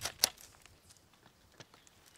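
Two sharp clicks about a quarter second apart, then a few faint ticks, from a Troy-Bilt chainsaw pole pruner's shaft and coupler being handled.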